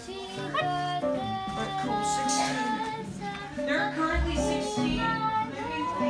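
A young girl singing a Christmas song, holding and sliding between notes, accompanied by a man playing an acoustic guitar.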